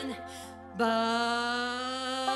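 Southern gospel accompaniment track at the close of a song. A held chord fades briefly, then a new chord starts just under a second in and is held steadily.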